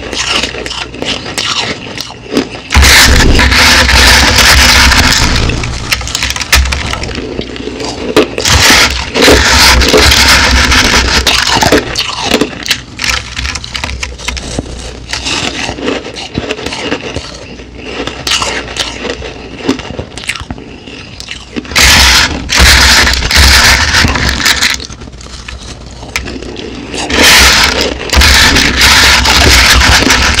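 Crushed ice being bitten and chewed close to the microphone, in four loud crunching bouts of a few seconds each, with quieter crackling of the ice in between.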